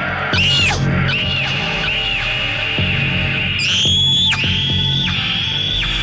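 Spooky music with a low repeating beat under high, arching gliding tones that rise and fall about once a second, a longer and louder glide about four seconds in.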